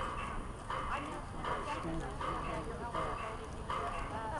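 Indistinct voices of spectators and players at an outdoor soccer game, with a soft sound repeating a little more than once a second over a steady low rumble.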